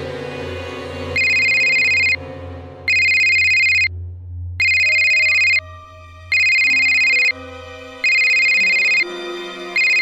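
Smartphone ringing with an electronic trilling ringtone, about a second on and a short gap off, six rings starting about a second in: an incoming call. A low music bed plays underneath.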